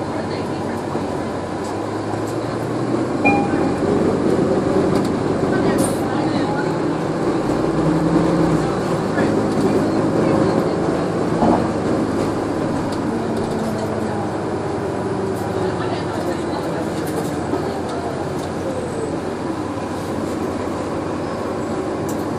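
Inside a NovaBus LFS hybrid bus under way: the Allison EP 40 hybrid electric drive whines, rising and falling in pitch as the bus speeds up and slows, over the Cummins ISL9 diesel and road noise. It grows louder about three seconds in and eases off again after about ten seconds.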